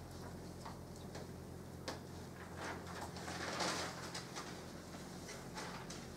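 Quiet room tone: a steady low hum with scattered faint ticks and clicks, and a brief rustle about three and a half seconds in.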